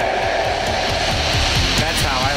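Heavy rock band music: distorted electric guitar over a steady drum beat, with no vocals.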